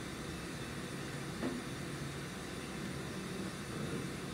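Steady room noise from a lecture room's ventilation, with one faint click about one and a half seconds in.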